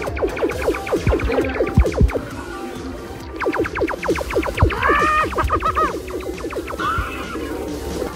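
Loud electronic music mixed with runs of quick electronic zaps, several a second, from laser tag blasters firing.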